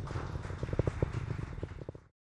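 Falcon 9 rocket engine noise: a low rumble with dense crackling that fades out near the end.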